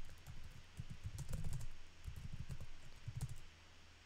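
Computer keyboard typing in short runs of keystrokes that stop about three and a half seconds in.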